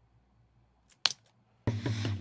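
Near silence, broken about a second in by two quick clicks from computer controls. Near the end, playback of the song starts: a pop track with singing.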